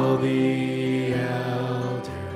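Worship music: a man sings one long held note into a microphone, accompanied by acoustic guitar and bass, the note slowly fading.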